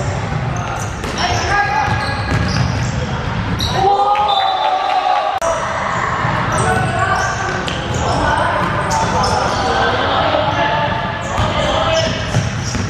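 Basketball being dribbled on a wooden indoor court, with voices calling out, echoing in a large sports hall.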